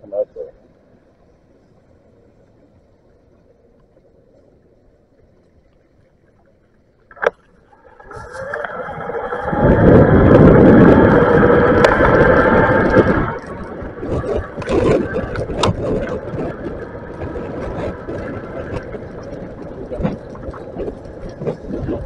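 Bafang BBSHD mid-drive e-bike motor whining as the bike pulls away from a stop, under a loud rush of wind on the microphone. It is fairly quiet for the first several seconds, with a single click about seven seconds in. The rush and whine come in about eight seconds in, are loudest for a few seconds, then settle lower as the ride goes on.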